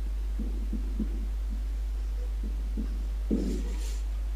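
A steady low electrical hum, with faint muffled low sounds scattered through it. Near the end comes a brief faint scratching of a marker writing on a whiteboard.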